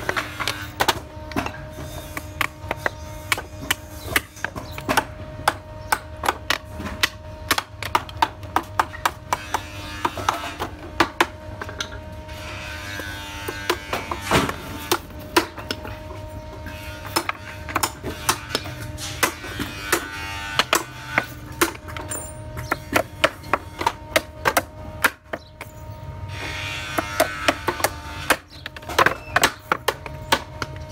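A hammer striking nails into the pine boards of a small wooden box: many sharp, irregular taps, at times several a second.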